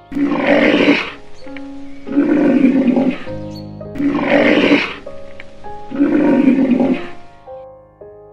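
A rhino's roaring call, the same call played four times about two seconds apart, each lasting about a second, over soft piano music.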